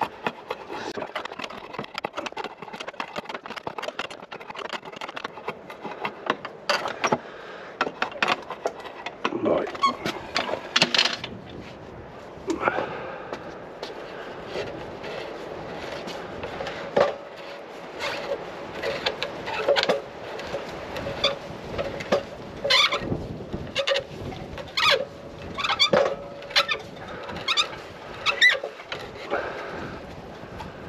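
Hand-shaping a round wooden leg's tenon: drawknife strokes scraping along the wood, then the leg's end being twisted through a hand dowel-making jig. Wood rasps and clicks against the blades, and a steady squeaky note runs through much of the second half.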